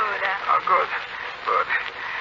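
Actors' voices speaking in a 1940s radio drama recording.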